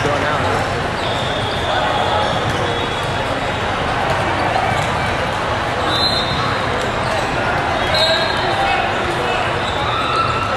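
Echoing hall ambience of an indoor volleyball tournament: many voices chattering, volleyballs bouncing on the courts, and short high squeaks now and then.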